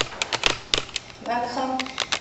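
A quick run of sharp, irregular clicks and knocks through the first second, then a voice speaking briefly.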